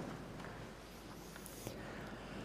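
Quiet church interior between readings: faint room noise with a few light clicks, the sharpest about three-quarters of the way through.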